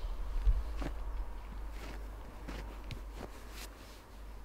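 Outdoor wind rumbling on the microphone, loudest about half a second in, with a handful of soft scuffing footsteps on dry ground.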